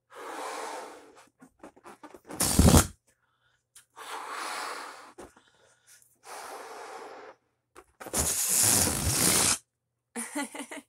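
A latex heart balloon being blown up by mouth: five puffs of breath forced into it a second or so apart. The short one about two and a half seconds in and the long last one are the loudest. Faint clicks come between the first two puffs, and the balloon does not pop.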